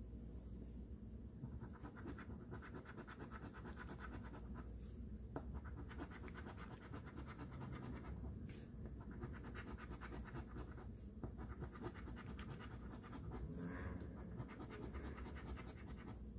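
A coin scratching the coating off a scratch-off lottery ticket in runs of rapid back-and-forth strokes, broken by a few brief pauses.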